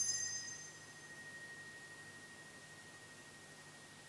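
An altar bell struck once during Mass, most likely at the consecration: a bright ring whose high overtones die away within about a second, leaving one lower tone that rings on faintly for several seconds.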